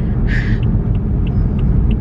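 Steady low road and engine rumble inside a moving car's cabin, with a short hiss about a third of a second in.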